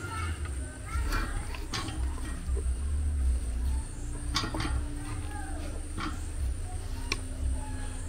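Plastic scoop and wooden spatula working stiff plantain fufu in a metal pot and onto plantain leaves, with a few sharp clicks and knocks over a steady low rumble; voices in the background.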